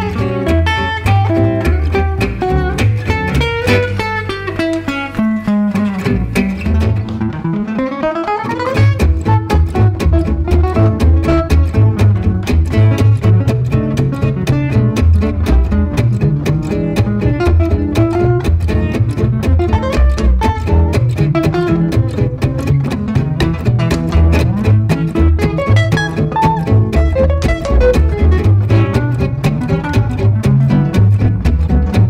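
Gypsy jazz (jazz manouche) trio playing: two acoustic guitars and a double bass. A falling guitar run in the first seconds thins out into a rising glide about eight seconds in, after which the trio settles into a steady, evenly pulsed groove.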